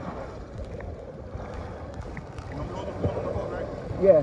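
Muffled low rumble and rustling handling noise on a phone's covered microphone as it records by accident.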